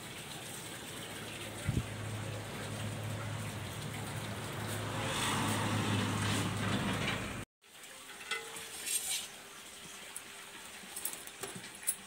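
Hot oil sizzling in an iron kadhai as batter fritters deep-fry, a steady hiss with a low hum under it that grows louder over the first seven seconds, with one knock about two seconds in. After a sudden cut the sizzling goes on more quietly, with a few light clicks of utensils.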